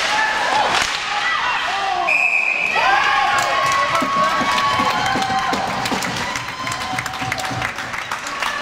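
A referee's whistle gives one short, steady blast about two seconds in, stopping play in a goalmouth scramble. Spectators and players then shout, over sharp knocks of sticks and skates on the ice.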